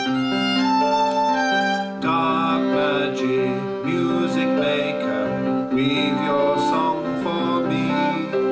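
A small folk band playing a slow tune: violin over keyboard and bass guitar. The sound grows fuller about two seconds in.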